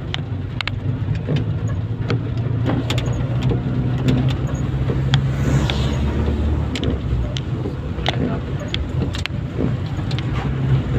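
Car driving in heavy rain, heard from inside: a steady low engine and road rumble with irregular ticks of raindrops striking the windshield and body.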